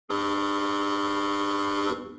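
Theatre-style opening buzzer sound effect: one steady buzzing tone held for nearly two seconds, cutting off just before the end.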